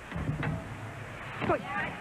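A gymnast's Yurchenko-style vault over arena crowd noise: a thud on the springboard about half a second in, then a louder hit about a second and a half in as she lands, with shouting around it.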